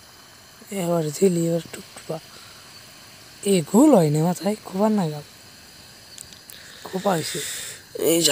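A person's voice speaking in three short spells, over a low steady hiss.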